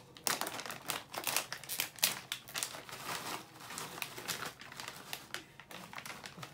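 A Doritos chip bag being pulled open and handled, its crinkly foil-lined plastic crackling and rustling in many short, irregular crackles.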